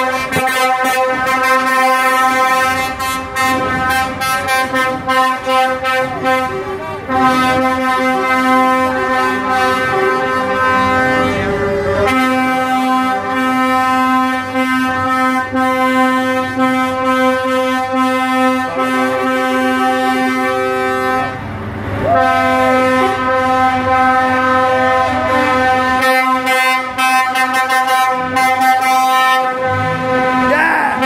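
Truck air horns sounding almost continuously from a line of passing lorries. They hold a steady chord, with an extra tone joining for a stretch and three short breaks.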